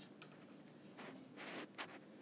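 Faint strokes of a stylus writing and drawing lines on a tablet, three short strokes in the second half.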